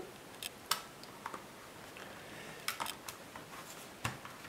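A handful of light plastic clicks and taps from hands handling a netbook's plastic underside and working its battery release latches, in two small clusters about a second in and near three seconds.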